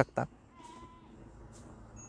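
The tail of a spoken word, then faint outdoor background with a short, faint animal call about half a second in.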